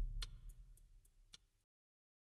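Tail of a TV programme's ident music fading out: a low bass note dying away under a clock-like ticking about four times a second. The ticking stops a little past halfway and dead silence follows.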